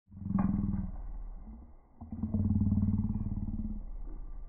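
Dairy heifers mooing: two low moos, each about a second and a half long, the second starting about two seconds in.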